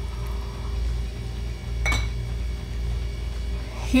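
Kitchenware clinking lightly once, about two seconds in, over a steady low hum.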